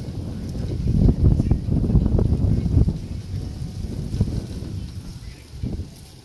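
Wind buffeting the microphone: a gusting low rumble that swells about a second in and fades toward the end.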